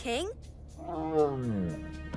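Cartoon tiger roaring once, about a second long, with the pitch sliding down through the call, over background music.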